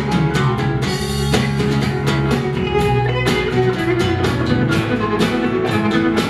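Live rock band playing, with a drum kit keeping a steady beat under electric and acoustic guitars, electric bass and keyboard.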